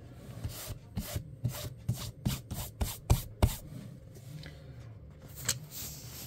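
Handling noise of a fabric-covered card deck box: a quick run of short scrapes and taps, about a dozen from half a second in to about three and a half seconds, as it is handled and set on a wooden desk, then one more tap near the end.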